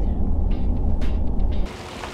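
Steady low rumble of road and drive noise inside the cab of a moving Ford F-150 Hybrid pickup, heard from the back seat. It cuts off suddenly near the end, giving way to a quieter, even hiss.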